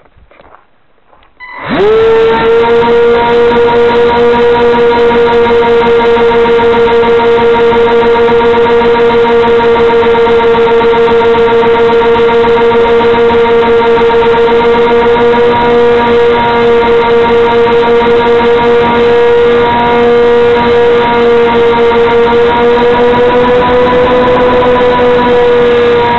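RC plane's motor and propeller running at steady high throttle, picked up by the onboard camera as a loud, steady whine that starts suddenly about two seconds in, its pitch wavering slightly.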